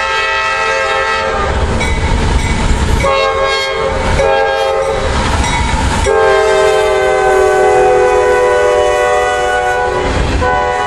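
CSX freight train's diesel locomotive air horn sounding several blasts, the last one long, its pitch dropping slightly as the locomotives pass about six seconds in. Under the horn are the locomotives' engine rumble and the clatter of the hopper cars' wheels on the rails.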